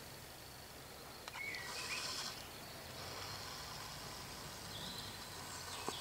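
Faint outdoor meadow ambience with a single short bird call about a second and a half in, and a faint high hiss through the second half.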